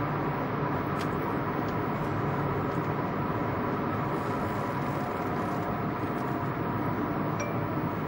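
Steady road and engine noise inside a car driving at road speed.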